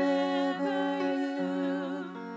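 Music: a voice holding long notes with a wavering vibrato over a steady sustained accompaniment.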